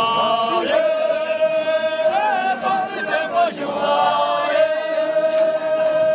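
A group of dancers singing a traditional line-dance song in unison, in high voices, drawing out two long notes of a couple of seconds each with a short turn of the melody between them.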